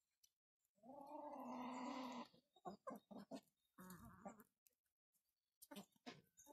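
Chickens calling: one long drawn-out call lasting about a second and a half, then a few short clucks, a second, shorter call about four seconds in, and more clucks near the end.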